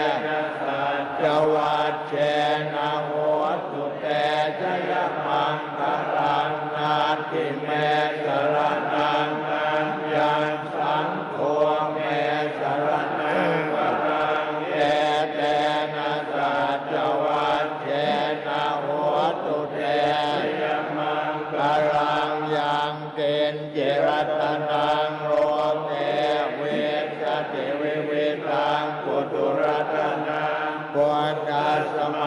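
Thai Buddhist monks chanting Pali blessing verses (paritta) together in unison, a steady, unbroken chant of men's voices.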